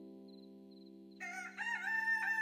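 A held chord of steady tones dies away, then after a short silence a rooster crows about a second in: one long call that falls away at its end.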